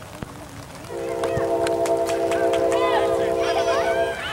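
A horn sounding one long, steady chord of several tones. It starts about a second in and holds for about three seconds before cutting off.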